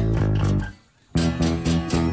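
Bass guitar and rhythm guitar of a rock-and-roll song with the drums taken out: a held chord that stops about three-quarters of a second in, a brief near-silent break, then rhythmic strummed chords starting again just after a second.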